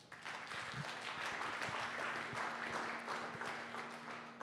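Audience applauding, many hands clapping together, starting just after the start and dying down near the end.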